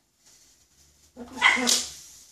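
A blue-and-yellow macaw gives one loud, harsh squawk a little over a second in, lasting under a second, after a second of faint soft noises.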